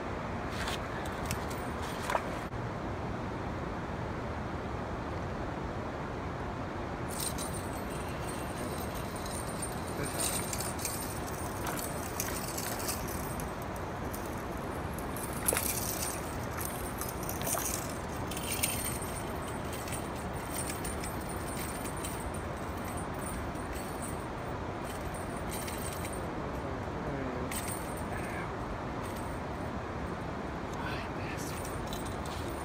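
Light clicks and metallic jingling of fishing tackle being handled, scattered over a steady background hiss; one louder clack about halfway through.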